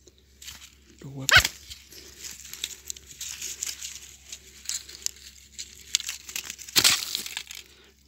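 Crackling, crinkling rustle of a string snare, feathers and dry ground litter being handled, with a louder crunch near the end.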